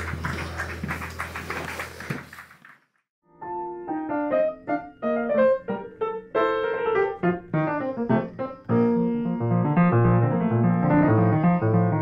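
A small group applauding for about two and a half seconds. After a brief silence, a Yamaha acoustic piano plays a flowing melodic passage, with deeper bass notes joining in the second half.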